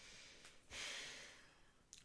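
Near silence, with one soft breath, like a sigh, a little under a second in.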